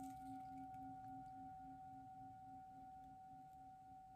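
Brass singing bowl ringing on after being struck with a wooden striker: a steady clear tone over a lower hum that pulses a few times a second, slowly fading. It marks the start of a period of silent prayer.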